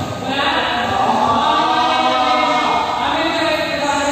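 Several voices chanting together in long, held notes.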